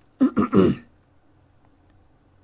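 A man clearing his throat: a couple of quick pulses, over within the first second.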